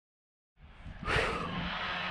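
Silence for about half a second, then a man drinking from a plastic water bottle, with a breathy rush of air about a second in and wind buffeting the microphone.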